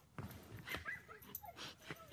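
A dog giving a few short, faint whines and yips.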